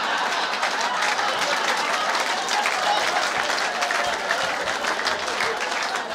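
Live audience applauding a comedian's punchline: a dense, steady patter of many hands clapping, with some crowd voices mixed in.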